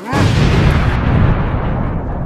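Explosion sound effect added in editing: a sudden loud boom that runs on as a low rumble, its hiss dying away about a second in.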